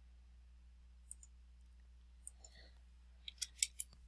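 Faint clicks of a computer mouse and keyboard over a low steady hum: a few single clicks, then a quick run of about five clicks near the end as a dimension value is entered.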